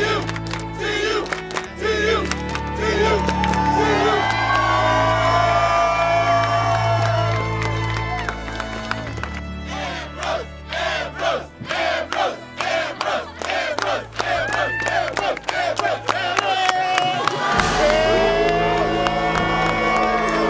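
Crowd cheering and shouting under background music with a steady bass line; the bass drops out briefly near the end.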